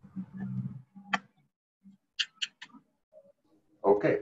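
Computer mouse clicks: a single sharp click about a second in, then a quick run of three, over faint low background noise from a call microphone.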